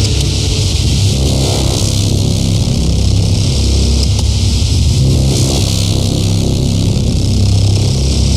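Electronic film score: a loud, steady low droning rumble with a hiss of noise over it.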